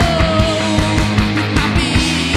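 Live rock band playing: a man singing over electric guitar, bass and drums, with a steady drum beat and a long note sliding slowly down in the first half.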